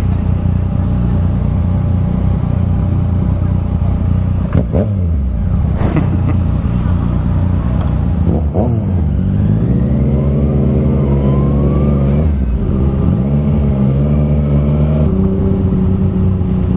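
Yamaha FZ-09's inline three-cylinder engine running under load, low and steady at first. From about ten seconds in it revs up as the bike accelerates, dips briefly around twelve seconds at a gear change, climbs again, then settles to a steady pitch near the end.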